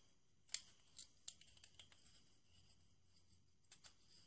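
Faint handling of a small cardboard lip gloss box: a few soft, scattered clicks and taps as it is turned over in the hands, with a cluster near the end.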